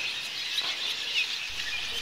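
A flock of cave swallows calling, a steady high chatter of many overlapping chirps.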